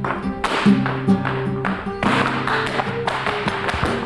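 Flamenco music: held notes with guitar and many sharp percussive taps in rhythm.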